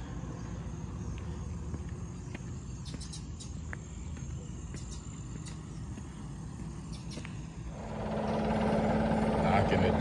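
Low, steady outdoor rumble. About eight seconds in, a steady engine hum comes in and grows louder.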